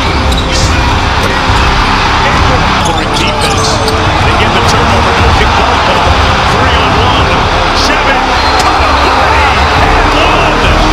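Basketball game sound: crowd noise in the arena with a basketball bouncing on the hardwood court, under background music, and a few short sharp sounds scattered through it.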